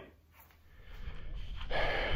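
Low wind rumble on the microphone, then a sharp breath drawn in near the end.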